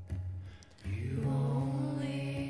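A woman's singing voice comes in about a second in and holds one long note. Before it, near the start, a guitar is strummed.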